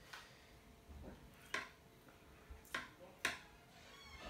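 A handful of light, scattered clicks and taps from a fork and hot boiled potatoes being handled while the skins are peeled off by hand.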